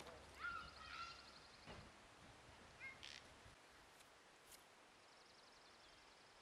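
Near silence outdoors with faint bird chirps and calls, a short chirp about three seconds in, and a fast high trill near the end.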